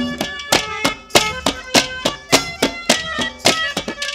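Instrumental Haryanvi ragni folk music between sung verses: sustained melody notes over a steady run of sharp percussive beats, about two a second.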